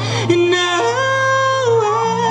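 A young man singing through a microphone, holding a long wordless note that steps up in pitch about a second in and then glides back down, over a steady low tone.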